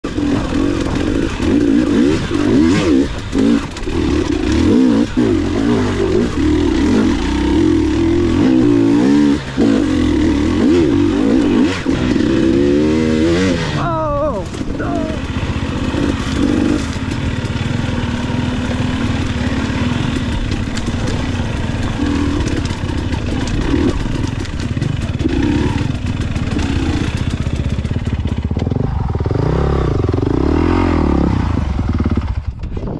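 Off-road motorcycle engine running under way, its pitch rising and falling with the throttle. A quick rev up and back down comes about halfway through.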